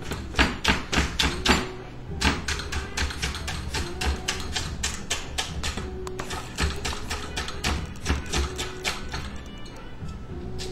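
Kitchen knife chopping celery finely on a cutting board: a rapid, even run of taps, several a second, with short breaks about two seconds in and about six seconds in.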